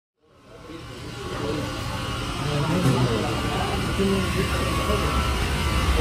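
Busy restaurant kitchen background: a steady low hum of kitchen equipment with scattered voices, fading in from silence over the first second or so.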